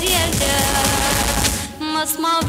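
A girl singing a song with vibrato into a microphone over a backing track with drums. Near the end the backing briefly drops out, leaving the voice nearly alone.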